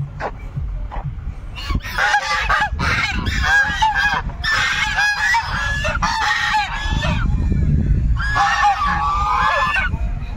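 A flock of white domestic geese honking, many calls overlapping in a run from about two seconds in, a short pause, then another run of honks near the end, over a low steady rumble.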